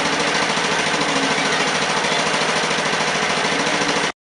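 Small engine of a portable motor pump running steadily under load while pumping out floodwater, loud and close, with a rapid, even firing beat. It cuts off suddenly at the very end.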